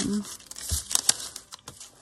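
Paper scraps rustling and crinkling as they are picked through and handled, with a few sharper crackles about a second in.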